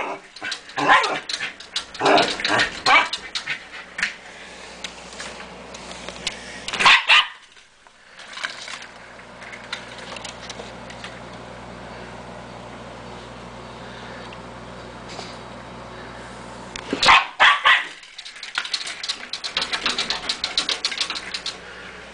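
A dog barking in bouts at a teasing squirrel: several barks in the first seconds, then a long lull with only a steady low hum, then barking again about 17 seconds in, followed by a quick run of shorter sounds.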